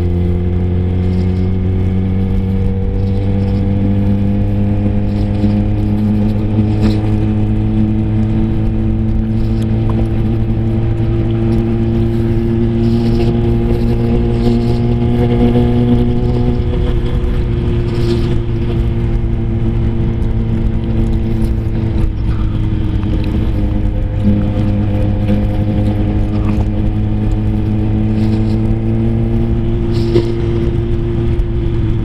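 Sport motorcycle engine running at a steady cruise, its pitch drifting gently up and down with the throttle.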